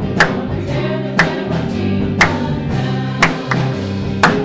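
A live worship band playing gospel music with a group of singers, over sustained bass and keyboard tones. A sharp drum hit lands about once a second, giving a slow, steady beat.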